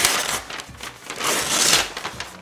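A brown paper grocery bag being opened out and spread flat, its stiff paper crackling and rustling in two bursts: one at the start and a louder one just past the middle.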